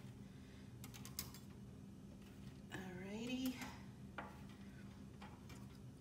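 A metal spatula clicks and scrapes against a metal baking sheet as cookies are lifted off it: a few sharp clicks about a second in and again past the four-second mark. A short vocal sound comes about halfway through, over a low steady hum.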